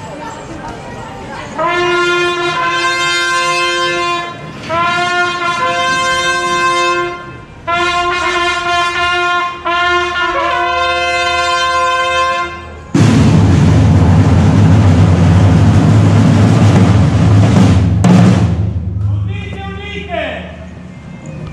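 A fanfare on long straight herald trumpets, played as four held phrases. About thirteen seconds in, loud drumming on large field drums takes over for about five seconds.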